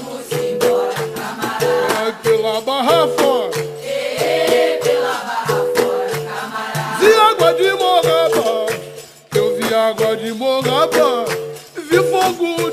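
Capoeira music in the São Bento rhythm: a berimbau repeating a steady two-note pattern with a shaker rattle and percussion, and voices singing in chorus at intervals. The music dips briefly a little after nine seconds.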